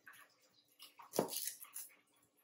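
Chef's knife cutting garlic cloves on a plastic cutting board: one firm knock of the blade on the board a little over a second in, with lighter ticks and crackles around it.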